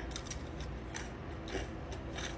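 Mouth-close chewing of dry ring cereal mixed with ground beef, a run of small, irregular crisp crunches.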